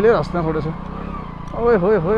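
Small 100cc motorcycle engine running at low speed with a steady low putter, under a man's voice.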